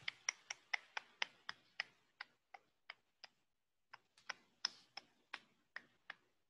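A series of faint, sharp clicks, about three a second, slowing slightly, with a short pause about three and a half seconds in before they start again.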